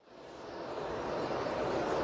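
A pack of NASCAR Cup stock cars running at speed in the draft: a steady rush of V8 engine noise that fades in and grows louder.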